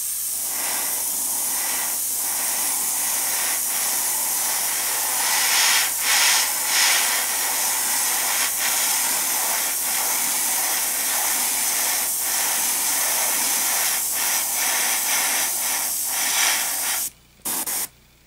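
Iwata Eclipse HP-CS airbrush spraying acrylic paint at about 1 bar: a steady hiss of air and paint that cuts off twice briefly near the end as the trigger is let go.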